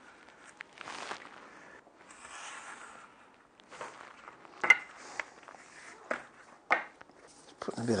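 Knife drawn along a wooden straightedge, slicing through black buffalo hide on a cutting mat in soft, scratchy strokes. Two sharp clicks come about two seconds apart in the second half.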